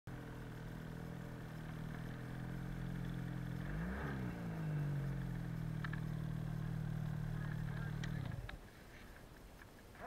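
Snowmobile engine running as the sled ploughs through deep powder, its pitch dipping and rising again about four seconds in, then stopping abruptly about eight seconds in.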